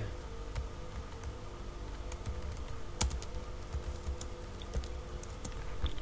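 Typing on a computer keyboard: scattered, irregular keystrokes, with one sharper click about three seconds in.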